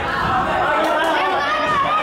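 Boxing spectators shouting and chattering over one another, many voices at once at a steady level.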